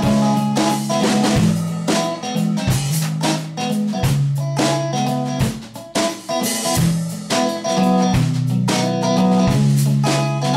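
A live rock band jamming with no vocals: a solid-body electric guitar plays through a combo amp over a drum kit, with steady drum hits and cymbal crashes under held low notes that change every second or so.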